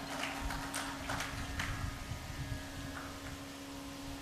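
A quiet pause in amplified speech: a steady low electrical hum, with a few faint, irregular clicks in the first two seconds.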